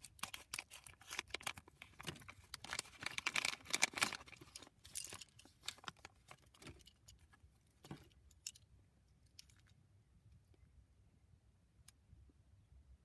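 A thin plastic foil minifigure bag crinkling as it is torn open, a dense crackle for about five seconds. Then small plastic Lego parts click against each other in a hand, with a few scattered clicks.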